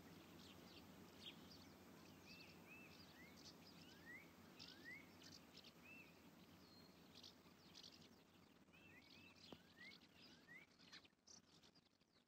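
Faint birds chirping, with many short calls, some sliding upward in pitch, over a low steady background hum. The chirps fade out near the end.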